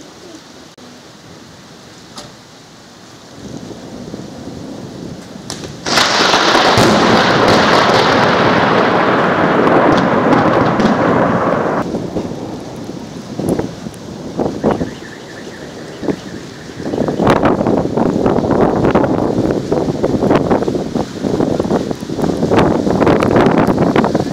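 Thunder: a low rumble builds, then a sudden loud crack about six seconds in rolls on for several seconds and dies down. A second long peal of rolling, crackling thunder fills the last several seconds.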